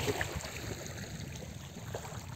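Small waves lapping at a pebbly lakeshore: a faint, steady wash of water with a few soft ticks.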